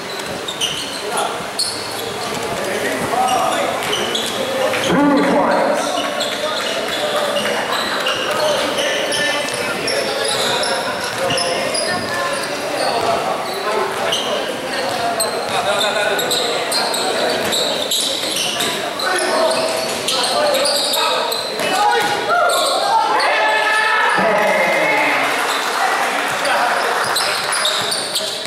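Basketball game in a large covered court: indistinct voices of players and onlookers calling out over one another, with a ball bouncing on the court.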